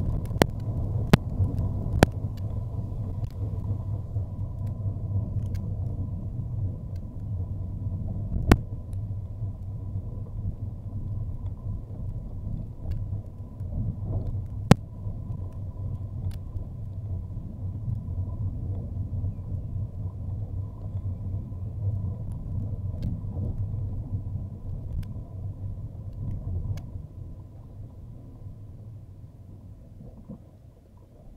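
Car cabin road noise: a steady low rumble from a car driving along, with a few sharp knocks, most of them in the first couple of seconds. The rumble dies away over the last few seconds as the car slows.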